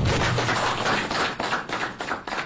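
A small audience applauding, many hands clapping at once, thinning into separate claps near the end.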